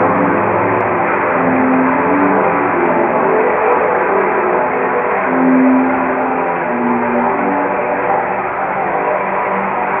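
Sound-art installation of tubes giving off a dense, ringing drone like a gong wash: many overlapping tones held together, with single low notes swelling and changing every second or so.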